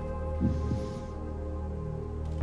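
Game-show suspense music bed: a low sustained drone of held tones under the contestant's thinking time, with a brief faint murmur about half a second in.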